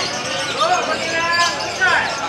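Several people's voices calling out over one another, with no clear words.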